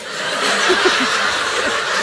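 Comedy-show audience laughing together, a steady wash of many voices from the whole crowd.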